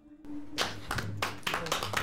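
The band's last held note stops just after the start. After a brief hush, a few people start clapping irregularly about half a second in.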